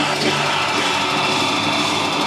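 Heavy metal band playing live: distorted electric guitars and drums in a loud, dense, unbroken wall of sound.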